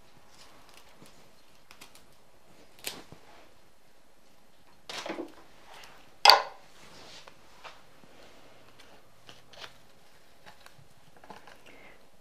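Cut flower stems and leafy foliage being handled and pushed into a glass vase: light rustling and scattered small clicks, with one sharp click about halfway through.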